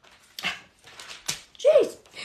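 A pet dog gives one short whine, rising then falling in pitch, near the end. Before it come a few soft rustles of thin Bible pages being turned.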